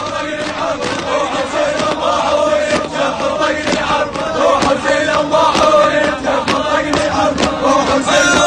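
A crowd of men chanting a protest chant in unison, with rhythmic handclaps about twice a second.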